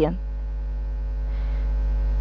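Steady electrical mains hum with a ladder of overtones. Faint scratching of a pen writing on paper comes in about halfway through.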